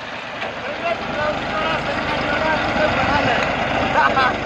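Massey Ferguson 1035 DI tractor's three-cylinder diesel engine running steadily while the tractor is driven through loose sand.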